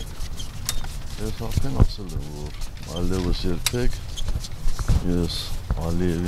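Voices talking at close range. Several sharp knocks come from handheld microphones being bumped and handled, over a low rumble of handling and wind on the microphones.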